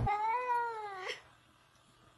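A cat meowing once: a single drawn-out meow of about a second that rises in pitch and then falls.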